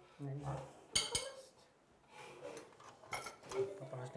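Cutlery and dishes clinking at a table: a few sharp clinks about a second in and again around three seconds, with soft voices between.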